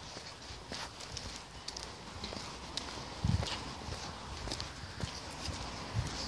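Footsteps of a person walking on a hard paved path, shoes scuffing and ticking on the surface at an uneven pace, with one low thump about halfway through.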